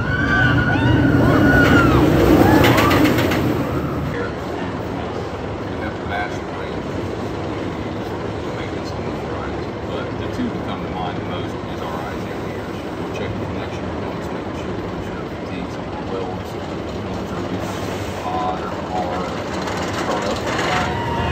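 Steel Vengeance roller coaster train passing close by with a rumble and riders screaming, loudest two to three seconds in and fading by about four seconds. A steady background of voices and ride noise follows.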